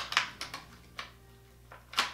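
Small plastic Christmas ornaments being handled and hung on a tinsel tree: a few sharp clicks and taps, the loudest just after the start and another at the end.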